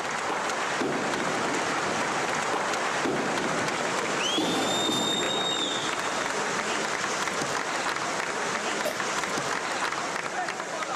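A crowd of tunnel workers applauding and cheering, with one shrill whistle, rising and then held, about four seconds in.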